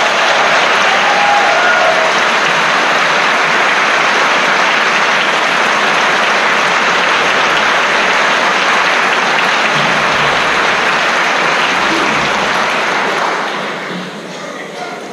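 Audience applauding steadily, tailing off near the end.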